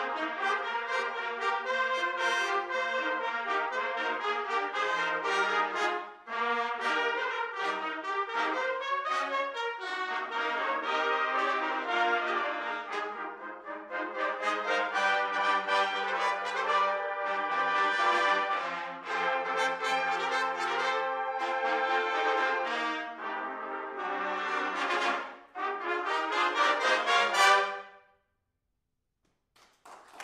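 Trumpet ensemble playing in close harmony, with many short, crisply tongued notes. It builds to a loud final chord that cuts off about two seconds before the end, leaving silence.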